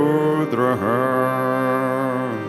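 A voice chanting a Sanskrit mantra in two drawn-out phrases, the second a long held note, over a steady drone.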